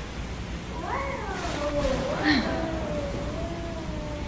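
Drawn-out vocal sounds that slide up and then down in pitch, one held for about two seconds, with a shorter one near the end.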